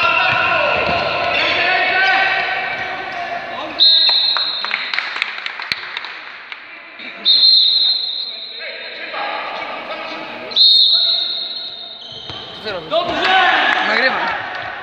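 Referee's whistle blown three times in a large sports hall, each a single shrill blast under about a second long, roughly three seconds apart.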